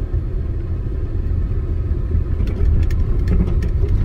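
Car driving along a dirt road, heard from inside the cabin: a steady low rumble of engine and tyres. A few faint clicks and rattles come about halfway through.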